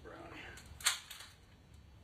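A voice saying "no", then a single sharp knock or click just under a second in, the loudest sound here.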